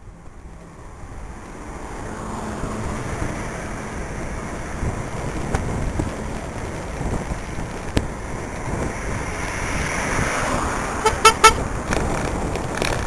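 Wind rush and road noise from a bicycle riding along a city street, growing louder over the first couple of seconds as it picks up speed, with a sharp click about eight seconds in. Near the end comes a quick run of short horn toots.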